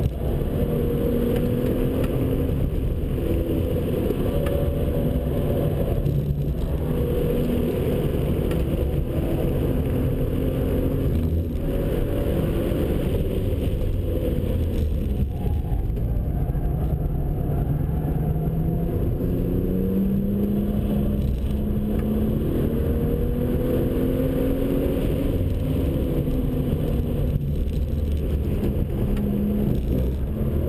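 BMW 1 Series M Coupe's twin-turbocharged 3.0-litre inline-six, heard from inside the cabin, pulling hard under load on a fast lap. Its note rises and falls with speed through the corners, with a few brief dips and a long steady climb in pitch in the second half.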